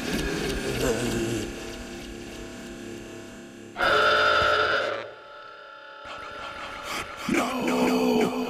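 Cartoon soundtrack: a character's voice over background music, with a loud held tone lasting about a second near the middle.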